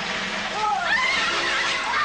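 A horse whinnying: a quavering call that bends up and down in pitch about half a second in.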